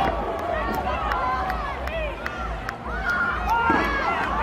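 Several spectators shouting encouragement at a lifter mid-lift, their raised voices overlapping, with a few sharp clicks among them.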